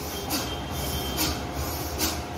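Forceful rhythmic breaths through the nose, in the fast bellows breathing of bhastrika pranayama, about one a second, over a steady low rumble.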